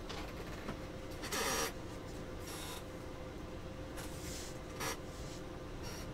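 Shrink-wrapped trading-card boxes handled and slid on a tabletop: four short rasping scrapes, the loudest about a second and a half in, over a faint steady hum.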